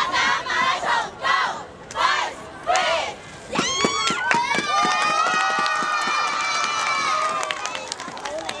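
Young cheerleaders chanting in unison in short rhythmic shouts, then, about three and a half seconds in, one long, high group shout that rises and is held for around four seconds, with sharp hits scattered through it.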